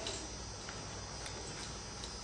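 Low, steady room tone of a hall: a background hiss with a low mains hum and a faint high-pitched steady whine.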